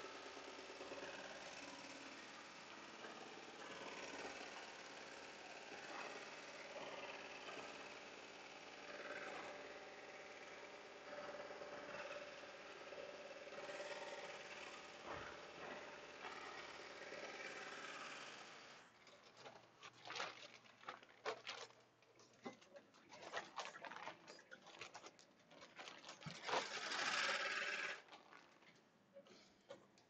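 Melco 16-needle embroidery machine stitching steadily, then falling silent about two-thirds of the way in as its bobbin thread runs out. After that come scattered clicks and rustling as the machine is handled.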